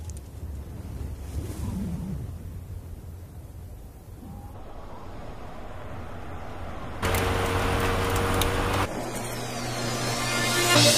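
A classic car drives on a dirt road, its engine a low rumble that slowly grows louder. About seven seconds in comes a sudden loud burst of engine and tyres on loose dirt, lasting about two seconds and cutting off sharply.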